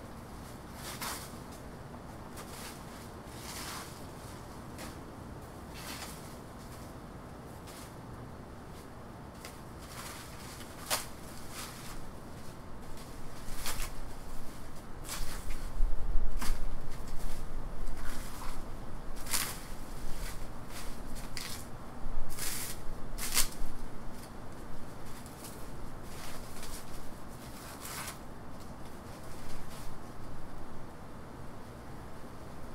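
A pull saw cutting into a banana plant's soft, wet trunk, with dry leaves rustling and crackling. It is fairly quiet for the first ten seconds, then irregular sharp crackles and rustles grow louder, with a dull thump around the middle.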